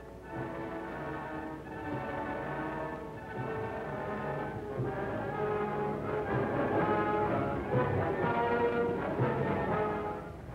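Orchestral film score with brass playing held chords that grow gradually louder.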